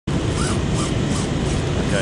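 Steady rush of water pouring over a low-head dam spillway, with a short sound repeating about two or three times a second on top.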